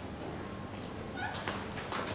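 A small dog giving a brief high whine a little over a second in, followed by a couple of short, sharp sounds.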